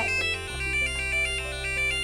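Electronic beeping melody from the EDU:BIT board's buzzer, a fast run of short stepped tones, sounding as the pedestrian crossing signal. Under it is music with a low bass note that shifts about half a second in.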